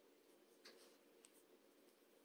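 Near silence, with a faint brief scratchy rustle about half a second in and a light tick a moment later: thin yarn being drawn through crochet stitches with a metal yarn needle.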